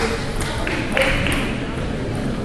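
A table tennis ball struck by bats and bouncing on the table during a serve and rally: a few sharp clicks in the first second, over hall chatter.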